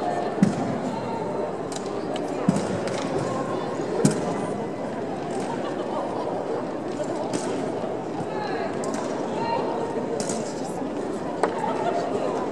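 Echoing hubbub of voices in a large arena hall, with a few sharp knocks and slaps from a drill team handling drill rifles. The loudest knocks come just after the start and about four seconds in; others come about two and a half seconds in and near the end.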